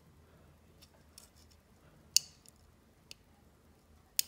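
Small sharp clicks from a thin metal pin being worked into the terminal cavity of a plastic ECU wiring-harness connector to press down the tab that locks a wire terminal. There is one sharp click about two seconds in and a few fainter ticks before and after it.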